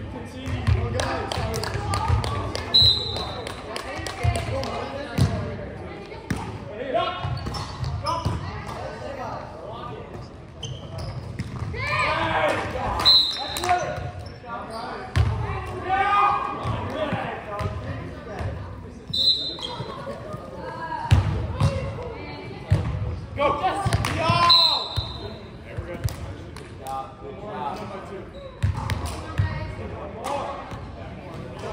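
Indoor volleyball play in a large, echoing gym: the ball is struck and thuds on the hardwood floor, and players' voices call and shout indistinctly. A few brief high squeaks cut through.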